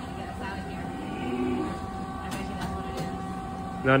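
E.T. Adventure ride vehicle moving along its track after restarting from a breakdown: a steady mechanical rumble and hum, with a few faint clicks about two to three seconds in.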